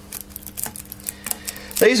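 Fingers picking and peeling at old tape wrapped around a vacuum hose handle: a few faint, scattered clicks and scratches over a low steady hum.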